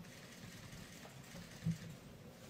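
Quiet room tone in the pause between speakers, with one brief low thump near the end.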